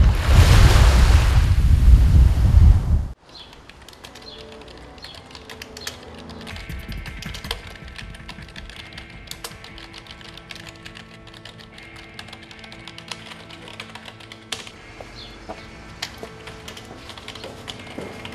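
A loud rushing noise for about three seconds that cuts off sharply, then rapid computer-keyboard typing, with quick irregular key clicks over quiet background music.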